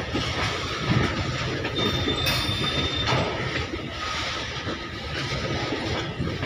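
Loaded freight wagons of a goods train rolling past close by: a steady rumble with wheel clicks over the rail joints. A brief thin wheel squeal comes about two seconds in.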